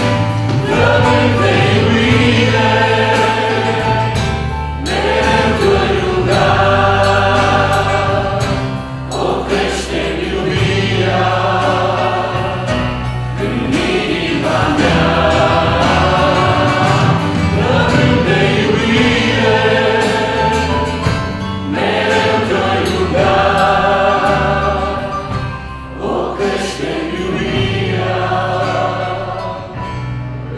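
Live Christian worship song: two men and a woman singing together into microphones, accompanied by strummed acoustic guitar and electric bass.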